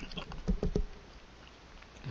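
Paintbrush tapping, a quick cluster of soft taps in the first second.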